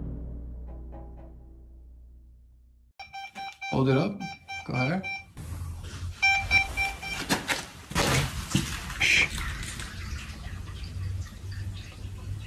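A deep music hit dies away over the first three seconds. Then a handheld EMF meter beeps in short steady tones over hushed voices, and from about five seconds in a continuous rushing noise in the house's plumbing runs on, like pipes after a toilet has just flushed.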